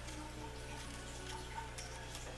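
Faint, scattered metallic ticks of a small hex key turning and seating the screws of a rifle scope ring, over a steady low hum.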